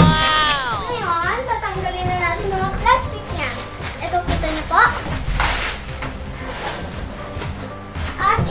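A young girl's voice with wordless squeals and exclamations that slide up and down in pitch, the first a long falling call. Between them comes the rustle of plastic wrapping being pulled off a new twin-tub washing machine.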